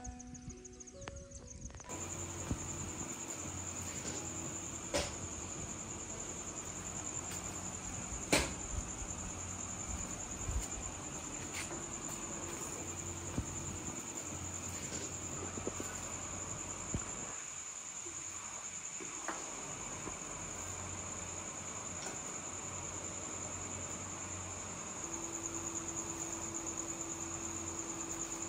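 Crickets chirping in a steady, high, pulsing trill, with a low hum underneath and a few sharp clicks, the loudest about eight seconds in. For the first two seconds, the end of some background music.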